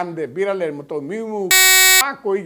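A man speaking, then about one and a half seconds in a loud, steady electronic buzz tone cuts in abruptly over the speech and holds for about half a second, like a bleep.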